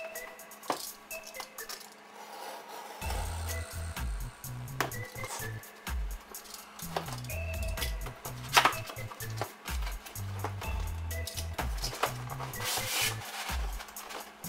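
Background music, whose bass line comes in about three seconds in, over the scrapes, clicks and knocks of a cardboard box being slit open with a utility knife, tipped up and its lid lifted.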